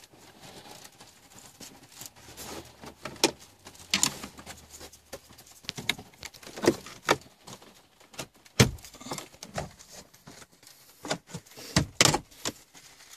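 Plastic dashboard trim bezel around a 2014 Smart Electric Drive's stereo being pried off with a plastic pry tool: irregular clicks, taps and snaps of the tool and the retaining clips letting go, with several louder snaps in the second half.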